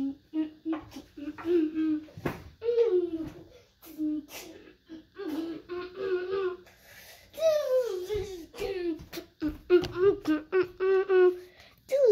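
A young boy's high voice, vocalizing and talking in short phrases that rise and fall in pitch, with a few sharp clicks between them.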